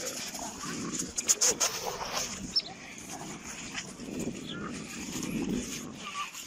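A dog barking amid the indistinct murmur of a crowd.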